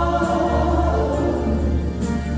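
A group of voices singing a church hymn together in harmony. They hold long notes and move to a new chord about a second in.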